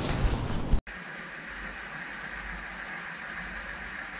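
Rough street and wind noise on a bike-mounted camera's microphone cuts off abruptly less than a second in, followed by a steady, even hiss.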